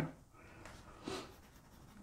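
Mechanical pencil scratching faintly on paper in short strokes as the lines of a drawn eye are gone over and darkened.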